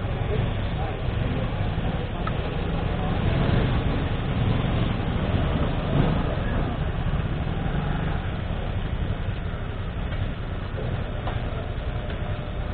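Motorcycle and scooter engines running at idle, a steady low rumble, with muffled voices in the background.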